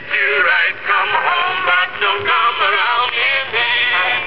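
Edison Standard cylinder phonograph playing a record through its horn: a man singing with instrumental accompaniment, in a thin tone with little bass or treble.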